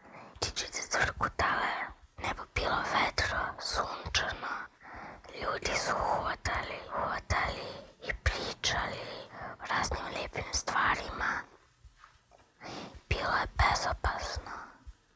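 A woman narrating in a whisper, in short phrases with brief pauses between them.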